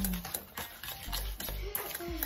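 Metal spoon stirring a paste of instant coffee, sugar and a little water in a stainless steel bowl, with light irregular clinks and scrapes of the spoon against the bowl.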